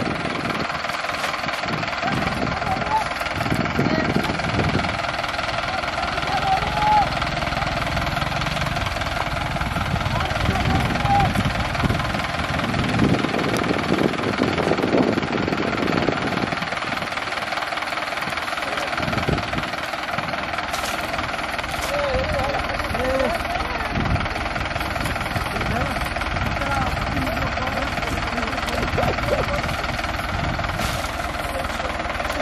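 A steady mechanical hum from an engine or motor, with people's voices calling now and then.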